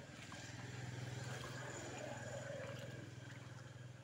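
A small engine running steadily with a low, pulsing hum that grows louder over the first second or two and then fades again, as if passing by.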